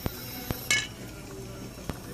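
Sharp clicks and one louder, brief crackling snap about three-quarters of a second in, as a small plasma lamp's glass tube is pressed against a neighbouring glowing lamp.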